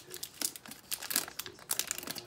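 Foil wrapper of a Pokémon booster pack crinkling and tearing as it is pulled open by hand, in a quick run of sharp crackles, the loudest about a second in and near the end.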